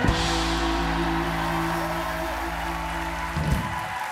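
A band's guest walk-on music ends on one long held chord that starts with a sudden hit and cuts off about three and a half seconds in.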